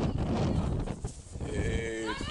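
Low rumbling noise on the microphone, then, from about one and a half seconds in, a drawn-out, bleat-like call from a person's voice.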